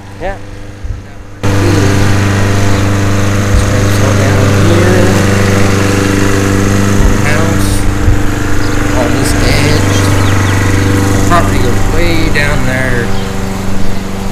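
Small lawn mower engine running at a steady speed, starting abruptly about a second and a half in.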